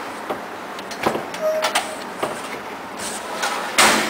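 Faber pull-out range hood being handled: a few light clicks and knocks, then near the end a short, loud sliding scrape as its glass visor is pulled out.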